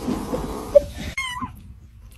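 A kitten giving one short, high mew about a second in, just after a brief loud blip.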